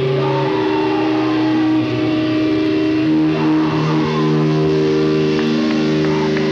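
Loud distorted electric guitars held in a sustained droning feedback, with no drumming; the held pitches shift about halfway through.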